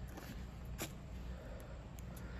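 Faint background noise with a low rumble, and a single light click a little under a second in.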